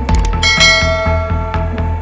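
Electronic background music with a steady beat. Just after it starts there are a couple of quick clicks, then a bright bell chime rings about half a second in and fades over about a second: the notification-bell sound effect of a subscribe-button animation.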